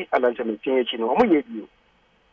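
Speech only: a man talking on a radio talk show, stopping shortly before the end.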